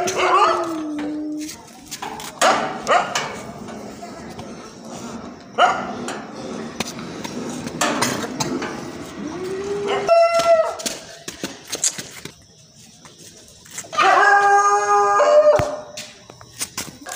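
Cat yowling: long, drawn-out calls, one dropping slightly in pitch at the start, another stepping up in pitch partway through, and the loudest, fullest one near the end. Small clicks and handling knocks from the leash and phone fall between the calls.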